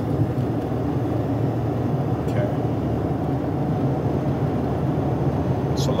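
Steady low road and engine rumble of a car driving on a highway, heard from inside the cabin.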